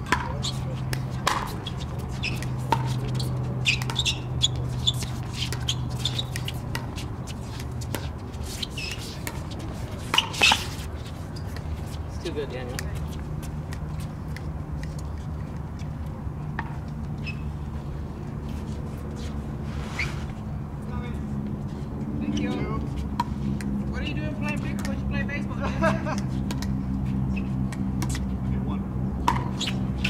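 Scattered sharp pops of pickleball paddles striking a plastic ball, the loudest a double pop about ten seconds in, over a steady low hum and faint voices.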